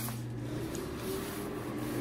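A man's drawn-out, low, steady "uhhh" of hesitation, held for about three seconds at one pitch.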